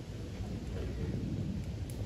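Low, steady rumbling background noise with no distinct events.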